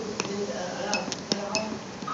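Several short, sharp clicks and light clinks, about five in two seconds, over faint background voices.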